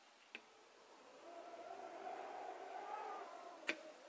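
Quiet handling of a fiberglass skateboard enclosure: a faint click about a third of a second in and a sharper click just before the end, with a faint wavering sound in between.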